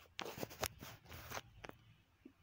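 Faint, scattered clicks and rustles of handling and movement, with no speech.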